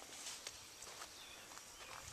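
Quiet outdoor background: a faint, even breeze hiss with soft scuffing steps and faint chickens, and a short click at the very start.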